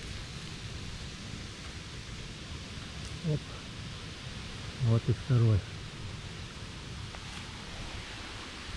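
Faint rustling of dry leaf litter and soil as a hand pulls an orange-capped bolete mushroom up out of the ground, over a steady outdoor hiss.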